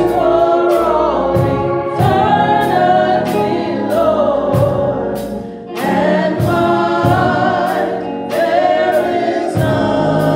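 A man singing a gospel song over sustained organ chords that he plays himself.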